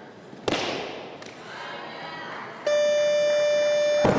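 A loaded barbell with bumper plates dropped from shoulder height onto the lifting platform: one heavy crash about half a second in, fading out. From about two and a half seconds in, a competition buzzer sounds one loud steady tone.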